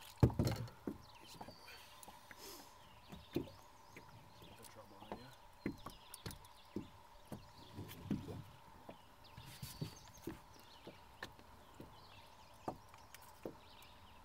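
A bass swung aboard on the line lands in the boat with a loud thump right at the start. Scattered light knocks and clicks follow as the fish flops against the hull and the lure's hooks are worked out of its mouth.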